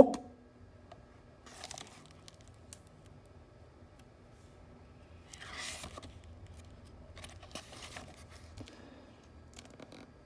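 Pages of a hardcover picture book being turned by hand: soft paper rustling in a few short spells, loudest about five to six seconds in, with a few light taps.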